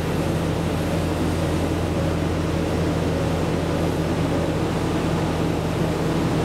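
Diesel railcar engines running with a steady low drone that holds the same pitch throughout.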